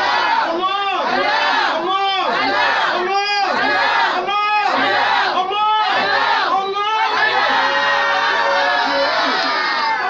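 Voices chanting a prayer in unison: a short rising-and-falling phrase repeated about every two-thirds of a second, then one long held note from about seven seconds in.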